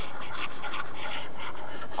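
Steady background hiss from the recording microphone, with faint light scratching like a stylus moving on a pen tablet.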